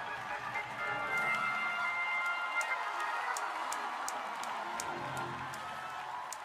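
Church keyboard music playing sustained chords, with a run of sharp, evenly spaced clicks of about three or four a second in the middle.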